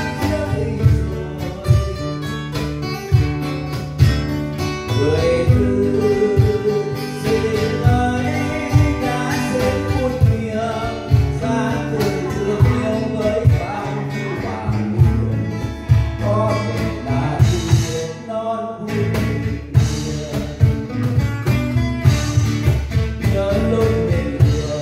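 Live acoustic band: a man sings into a microphone over strummed acoustic guitars, with a steady beat of low hand strokes on a cajón.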